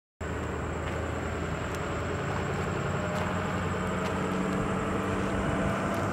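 A motor vehicle's engine running steadily, with a low hum that grows slightly louder. A faint, steady high-pitched whine runs over it.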